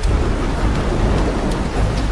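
Loud, steady rush of water over a deep low rumble.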